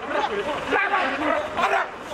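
Raised voices: people shouting and yelling during a street scuffle.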